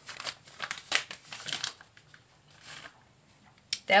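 Plastic food packaging crinkling and rustling as it is handled, in short bursts over the first couple of seconds, then quieter.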